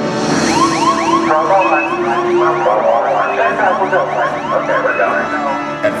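A warbling, siren-like alarm tone from a film soundtrack, its pitch sweeping about three times a second over a dense, busy backing, played through a theatre's speakers.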